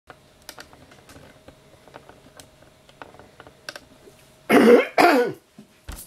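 A person coughs twice in quick succession, about four and a half seconds in, after a stretch of light scattered clicks and taps.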